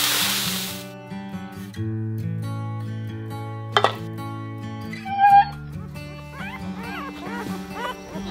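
Water poured into a hot wok hissing and steaming, dying away within the first second. Background music follows, and over the last couple of seconds golden retriever puppies give short rising-and-falling whimpers and yips.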